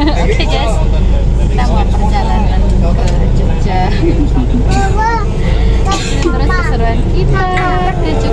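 Steady low rumble of a bus running, heard inside the passenger cabin, under passengers' voices talking.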